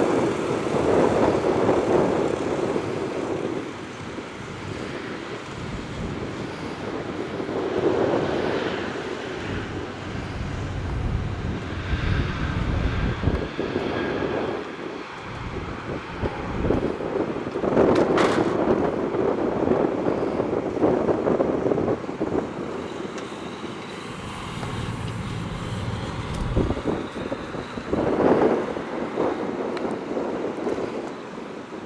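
Vehicles passing by one after another, the sound swelling and fading several times, with a single sharp click about 18 seconds in.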